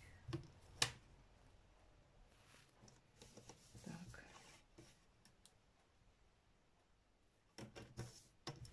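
Near silence with faint handling of paper sheets and a metal ruler on a table: a single sharp tap about a second in, a soft rustle around four seconds in, and a few taps near the end.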